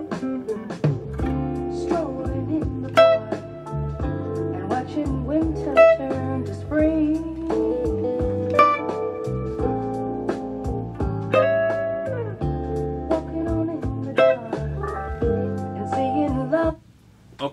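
A soul-jazz ballad recording playing, with a bass line under keyboard chords and clean electric guitar lines.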